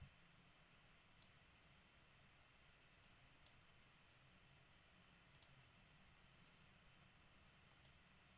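Near silence with a low room hum and a handful of faint computer mouse clicks spread through, two in quick succession near the end.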